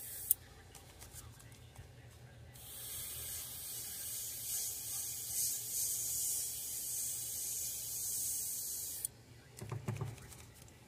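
Airbrush spraying at a low pressure of about 20 PSI: a steady hiss of air and paint that starts between two and three seconds in and stops about nine seconds in, over a faint steady low hum.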